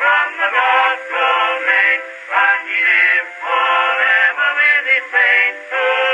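A male vocal quartet singing a hymn, played from a 1908 acoustically recorded 78 rpm disc on a 1914 Victor-Victrola VI wind-up phonograph. The sound is narrow and thin, with no bass and little treble.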